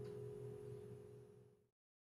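Acoustic guitar's last open E major chord ringing out and fading, cut off suddenly about one and a half seconds in.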